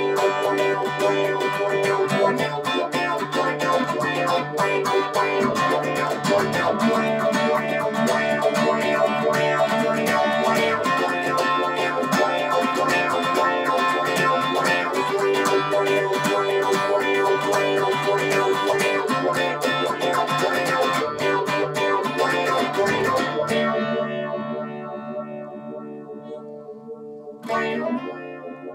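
Electric guitar played with tremolo through an effects unit, a steady stream of rapid pulsing notes over a held low note. The notes die away from about three-quarters of the way in, and a new strum comes near the end.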